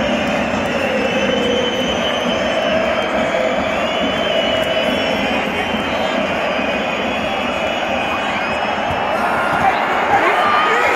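Dense, steady noise of a large football stadium crowd, thousands of fans singing and shouting together, swelling slightly near the end as the ball is played into the box.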